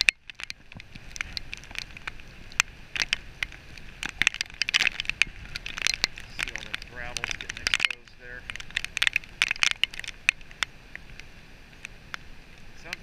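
Rain striking the camera and microphone in quick irregular ticks, over the steady noise of gusting wind and surf.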